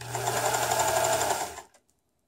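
Pfaff 332 sewing machine running for about a second and a half, its motor humming under a fast, even stitching patter, then stopping. This is a short test seam while the thread tension is being adjusted.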